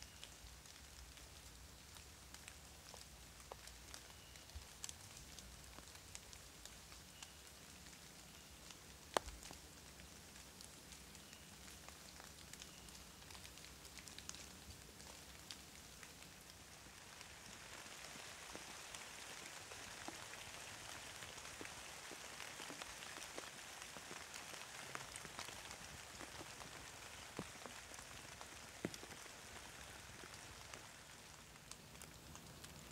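Light rain falling on the leaves and leaf litter of a hardwood forest: a faint steady hiss scattered with separate drop ticks, growing louder and denser past the middle. One sharper tick stands out about nine seconds in.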